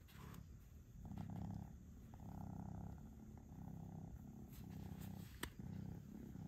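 A domestic cat purring, the purr swelling and fading in cycles a little under a second long. One brief click about five and a half seconds in.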